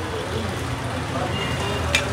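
Steady background hum of traffic with faint voices, and one sharp tap on the glass counter just before the end as a small item is set down.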